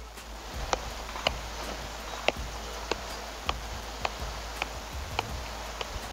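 Nike Flight soccer ball being juggled off the laces of the foot: a steady run of short, light thuds, about two touches a second.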